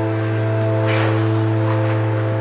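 Background score of the drama: a sustained chord held over a low drone note, with a faint soft rush about a second in.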